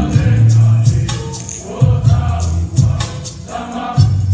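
A large mixed group singing a song together in chorus, backed by sustained bass notes and a steady percussion beat.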